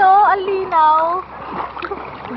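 A high voice in long, wavering held notes over the first second or so, then water splashing.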